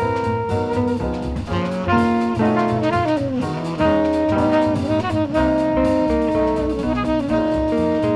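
Instrumental small-group jazz recording: a lead melody of held and sliding notes over bass and drums.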